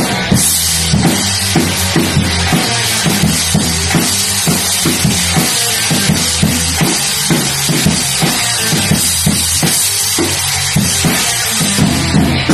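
Drum kit with a Yamaha bass drum played in a steady rock beat, about two hits a second, under a constant wash of cymbals.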